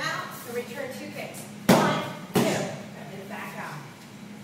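Two sharp smacks of strikes landing on a Muay Thai kick pad, about two-thirds of a second apart, midway through.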